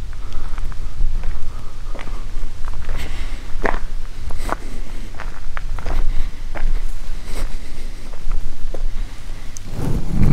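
Irregular footsteps, a crunch every half second to a second, over a steady low rumble of wind on the microphone.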